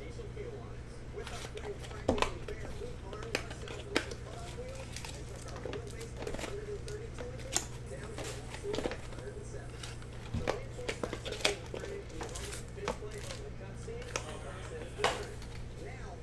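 Cardboard trading-card boxes being handled and set down: scattered taps, clicks and light rustles of the thin card packaging, over a steady low hum.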